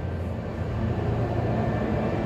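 Steady low background rumble with a faint hum and no distinct events, as heard from inside a large building by a view window.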